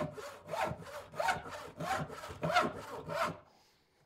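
Hand saw crosscutting a clamped softwood board in steady back-and-forth strokes, a rasp roughly every half second, stopping about three and a half seconds in.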